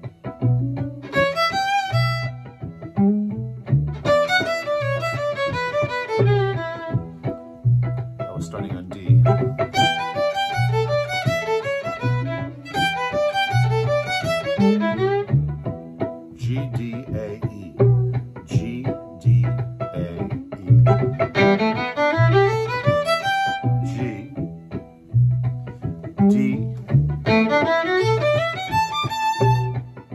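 Violin played in fiddle style: short, bluesy melodic phrases in E, voice-led over a G–D–A–E chord progression. The phrases are separated by gaps of a second to several seconds, the longest about halfway through. A steady low pulse, about once a second, keeps going through the gaps.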